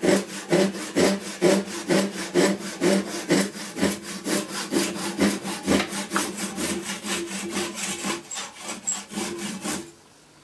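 Hand saw cutting through the end grain of a hickory handle and its wedge, in steady back-and-forth strokes about three a second, stopping suddenly at the end.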